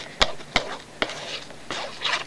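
Plastic squeeze bottle of white glue being worked over a sheet of file-folder paper, its nozzle dabbing and spreading the glue: three sharp clicks and taps in the first second, over soft rustling.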